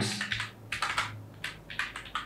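Typing on a computer keyboard: several separate keystrokes in short, irregular runs.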